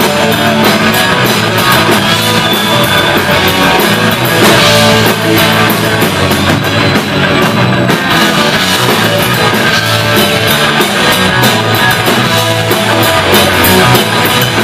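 Live rock band playing loud and steady: electric guitars, bass guitar and drum kit.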